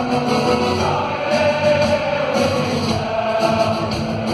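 A live band playing, with voices singing a held, slow melody over it.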